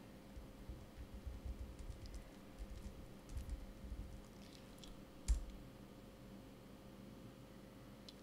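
Faint typing on a laptop keyboard: a scatter of soft key clicks, then one sharper keystroke about five seconds in.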